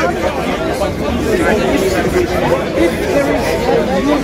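People talking at close range, the words indistinct because of poor audio.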